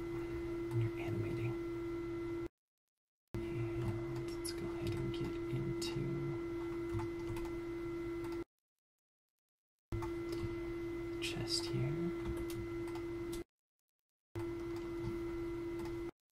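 A steady mid-pitched hum with faint clicks of a computer mouse and keyboard, cut three times by a second or so of dead silence.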